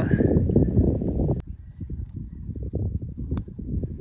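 Wind buffeting the microphone, a steady low rumble, with two short sharp ticks, one about a second and a half in and one near the end.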